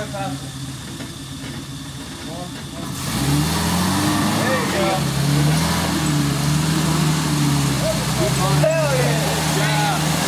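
Small 4x4's engine revving up about three seconds in, then running under load with its pitch rising and falling as the throttle is worked climbing slick wet clay. Voices call out over it.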